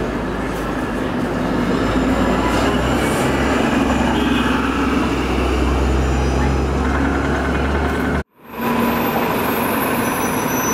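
City bus engine, an Orion V, pulling away from a stop: a low drone builds about a third of the way in and holds steady over the street's traffic noise. It cuts off suddenly near the end, and another city bus is heard idling.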